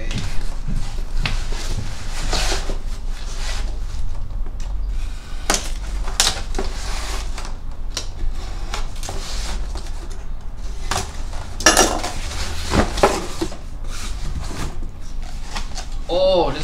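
Cardboard shipping box being opened by hand: the tape is slit, the flaps are pulled open and the contents are shifted, giving scattered scrapes, rustles and sharp knocks.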